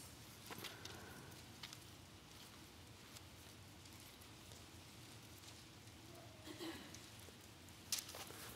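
Near silence with a few faint paper rustles and clicks of Bible pages being turned.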